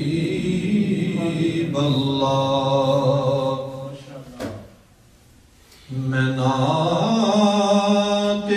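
A man singing an Urdu manqabat in praise of Ali in long, drawn-out held notes. The voice fades out and stops briefly about halfway through, then comes back on a rising note.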